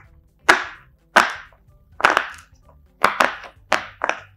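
Silicone butterfly pop-it fidget toy, its bubbles pressed one at a time on the hard side: about six sharp pops at uneven intervals.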